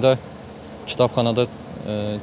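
A young man's voice speaking in short phrases into a handheld microphone, with a low steady street hum in the pauses.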